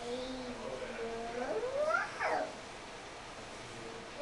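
A toddler's wordless vocalization: a drawn-out whining sound that holds steady for about a second, then slides upward in pitch and breaks off about halfway through.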